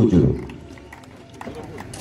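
A man's voice over a public-address system ends just after the start and dies away in echo. Then comes a lull with faint background music and a few faint, small knocks.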